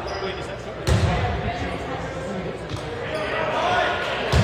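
A ball smacking once onto a wooden gym floor about a second in, loud and echoing, over steady background chatter in a large gymnasium.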